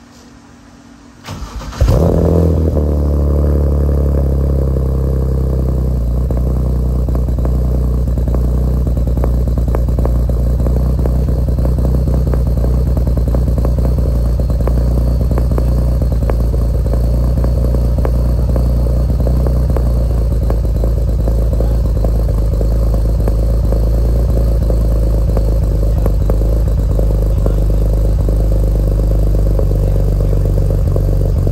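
BMW E92 started for the first time through a newly installed exhaust: a short crank about a second in, the engine catches with a flare near two seconds, then settles into a steady idle.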